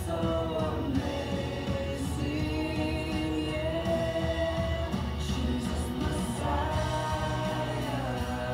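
Contemporary worship song playing: singing in long, held notes over instrumental backing.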